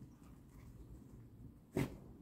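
A Bedlington whippet, nose to the ground on a scent search for a truffle, gives one short, sharp puff of breath through the nose near the end. Beneath it runs a faint low rumble.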